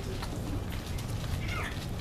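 Steady low room hum and hiss, with a few faint clicks and a brief faint squeak about one and a half seconds in.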